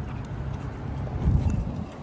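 A large dog's paws and nails stepping on a concrete sidewalk as it comes in close, with light ticks over a steady low rumble and a louder low thump about a second and a half in.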